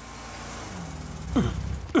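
Cartoon car engine humming, slowly growing louder as the small doctor's car drives up a hill. Near the end come two short sounds that drop sharply in pitch.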